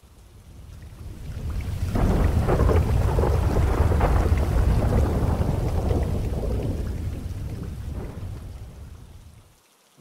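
A long roll of thunder over steady rain. It swells in over the first two seconds, holds a heavy rumble, and fades away near the end.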